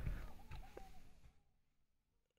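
Near silence: faint background noise with one small click, fading to dead silence about one and a half seconds in.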